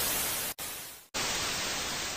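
Television static sound effect: a hiss of white noise, chopped by sudden breaks about half a second in and again about a second in, each stretch fading a little before the next starts.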